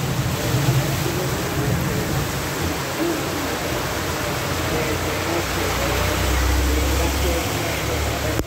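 Heavy rain pouring steadily onto a flooded street, with voices in the background. A low motorcycle engine rumble builds over the last few seconds as the bike rides through the water.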